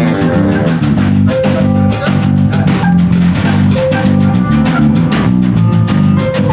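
A band playing an instrumental groove: a drum kit keeps a steady beat with frequent cymbal hits over a moving bass line, with other plucked strings in the mix.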